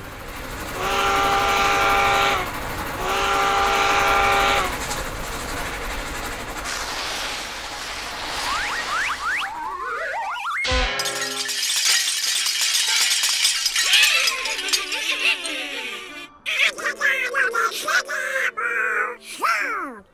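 Cartoon soundtrack of orchestral music and comic sound effects. It opens with two long held horn-like notes and rising whistling slides, then breaks off suddenly about ten seconds in. Busier scraping and clattering effects follow.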